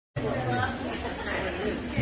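Indistinct chatter of several voices talking at once.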